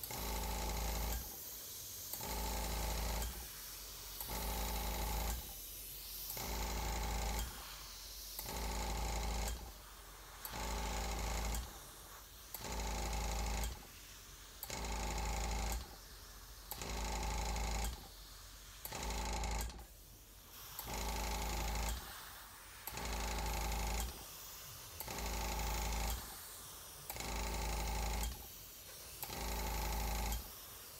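Dual-action airbrush spraying paint in short strokes, about one every two seconds, each burst of air hiss coming over the steady hum of its air compressor, which grows louder with each burst.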